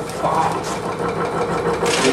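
Shaking table running beneath a balsa-wood model tower, giving a steady machine hum, with people talking in the background.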